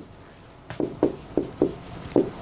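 Stylus writing on a touchscreen whiteboard. After a quiet moment comes a quick run of short taps and scratches as a word is written, starting under a second in.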